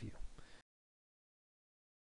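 The last half-second of a narrated phrase, then dead digital silence with no sound at all.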